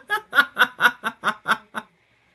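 A woman laughing in a quick, even run of short "ha" pulses, about four or five a second, that cuts off suddenly near the end.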